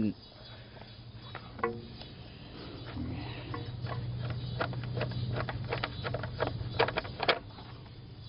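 Light metallic clicks and taps of a wrench and bolt being worked loose by hand in a car's engine bay, coming in a quick run in the second half, over a low steady hum.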